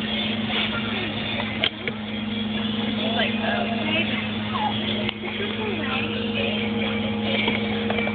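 A steady low mechanical hum, with faint background voices over it and a single sharp click a little under two seconds in.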